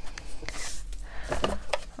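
Paper and cardstock handled on a craft mat: a soft rustle of paper sliding and a few light taps and clicks.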